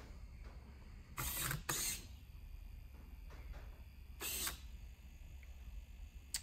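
Servo motors of a 3D-printed Rubik's Cube solving robot whirring briefly as the grippers move the cube between photos: two short whirs about a second in, and a third about four seconds in.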